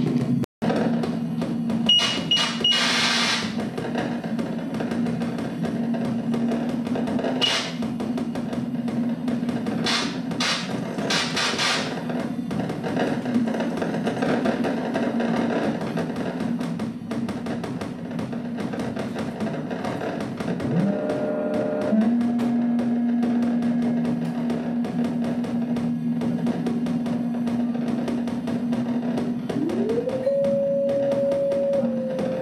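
Improvised electronic music from a modular synthesizer: a steady low drone under a dense stream of clicks, with loud bursts of noise in the first twelve seconds. The sound cuts out for an instant about half a second in, and about two-thirds of the way through a tone glides up into a new held drone.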